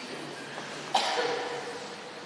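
A single cough about a second in, sudden and loud, with a short echo trailing off.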